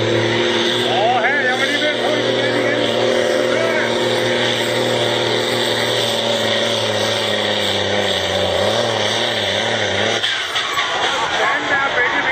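Farm tractor's diesel engine running flat out under load while pulling a weight-transfer sled, a loud steady drone. Its pitch wavers near the end as the engine bogs down under the sled's growing weight, then the engine note drops off about ten seconds in as the pull ends. Voices can be heard over the engine.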